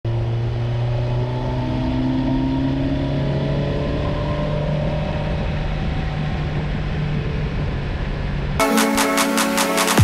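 Kawasaki Versys 1000's inline-four engine running steadily under way, its pitch drifting slowly, over a rush of wind noise. About eight and a half seconds in, electronic music with a heavy beat cuts in abruptly.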